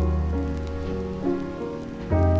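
Jazz piano trio playing from a 1968 vinyl record: a new piano chord comes in about a third of a second in and another just past a second, over a held bass note. Faint record-surface crackle runs underneath.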